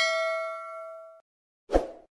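A bell-like ding sound effect from a subscribe animation's notification bell, ringing and fading away about a second in. It is followed near the end by a short soft thump.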